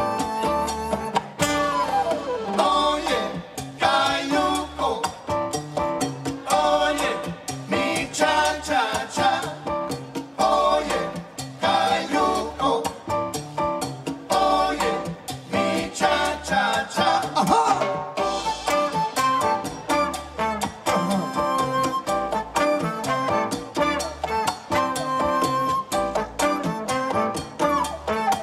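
Live Latin jazz band playing an upbeat soul groove: congas and timbales over a bass pulse, with keyboard and a horn section of trombone, trumpet and flute.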